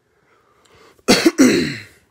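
A man coughs once, about a second in: a sudden harsh burst that fades out over most of a second.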